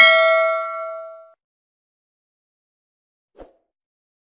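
Notification-bell ding sound effect, a bright ring of several tones that fades out over about a second. A faint short click comes near the end.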